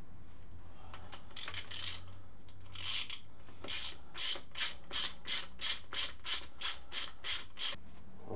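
Ratchet spanner undoing a small 10 mm bolt on a motorcycle engine casing: a short rasp of pawl clicks on each back-swing. A few slow strokes at first, then a steady run of about three strokes a second in the second half.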